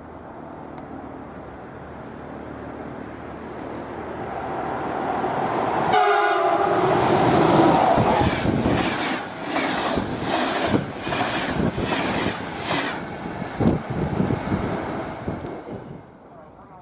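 EU44 Husarz (Siemens Taurus) electric locomotive and its passenger coaches passing at speed: a rush that builds as it approaches, a short horn blast about six seconds in, then the wheels clattering rhythmically over rail joints as the coaches go by, dropping away just before the end.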